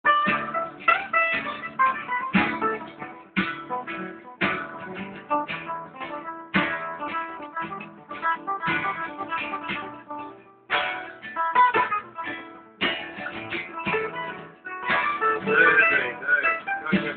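Acoustic guitar being played, plucked chords and single notes struck about once a second and left to ring out.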